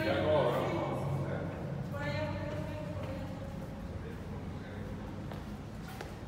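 Voices with no clear words: a pitch-bending burst right at the start and another about two seconds in, over a steady low hum.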